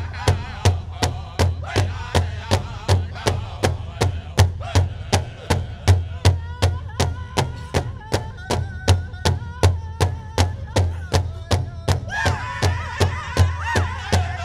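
Powwow drum group striking a large hide drum in unison with drumsticks, about two and a half beats a second, while singing over the beat. The singing comes in louder and higher about twelve seconds in.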